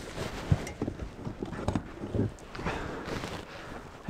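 Rummaging through gear in a car boot to pull out a Jetboil gas stove: rustling of bags and clothing with a few irregular light knocks and clunks, a sharper click about half a second in.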